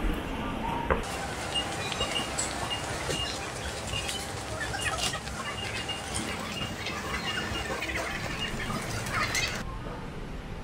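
Supermarket ambience: a shopping trolley rolling and rattling along the aisle over a murmur of background voices, with a short high beep repeating many times through the middle of the clip.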